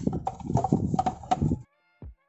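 Plastic side-mirror parts clattering and clicking together as they are handled and fitted back into the mirror housing: a quick, uneven run of knocks and clicks that stops suddenly about a second and a half in.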